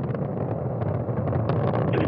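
Soyuz-2.1a rocket's first stage (four strap-on boosters and the core engine at full thrust) during ascent: a steady low rumble with a dense crackle running through it.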